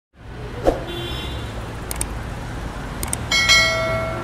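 Channel logo intro sound effects: a steady low rumble with a sharp hit just under a second in, two quick double clicks about a second apart, then a bright bell-like chime ringing out near the end.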